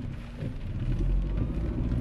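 Low engine and road noise of a car underway, heard inside the cabin, growing louder about a second in.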